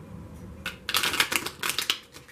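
Tarot cards being shuffled by hand: a few clicks about two-thirds of a second in, then a quick dense run of rapid card clicks lasting about a second.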